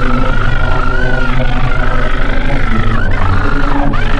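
Loud, distorted horror-soundtrack noise: a low hum with a fast, even pulsing and a wavering high whine that bends and dips near the end.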